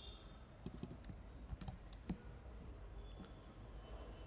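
Faint, irregular clicks of computer keys being pressed a few at a time, the sharpest about two seconds in.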